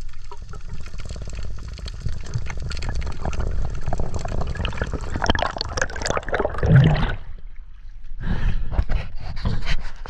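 Muffled rushing water and crackling bubbles heard underwater as a spearfisher kicks up from the bottom, loudest as he rises through his bubbles about five to seven seconds in. After a short drop just before eight seconds, splashing and lapping water are heard at the surface.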